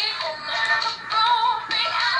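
A pop song with high sung vocals playing from the L.O.L. Surprise! OMG Remix doll's toy LP record, thin-sounding with little bass.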